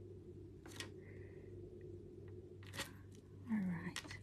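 Faint scratching of a fine-tip pen drawing short strokes on a paper tile, over a steady low room hum, with a couple of small clicks. Near the end comes a short falling hum of the voice.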